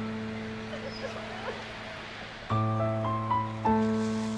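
Soft background score of held chords that fade slowly, with new chords struck about two and a half seconds in and again near the end. Faint wavering sobs of a crying woman sit underneath early on.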